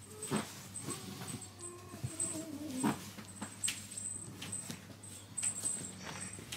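Ginger Persian kitten giving one long, slightly falling whine-like cry lasting about two and a half seconds, over soft rustles and taps of fur and bedding as it is handled.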